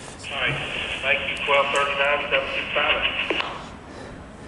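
A voice talking over a railroad two-way radio scanner, thin and narrow-sounding, from just after the start until about three and a half seconds in.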